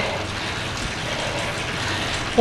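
Steady whooshing noise with a faint low hum running under it, with no speech.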